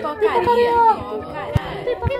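Several voices overlapping at once, like chatter, with a low thump about one and a half seconds in and another at the end.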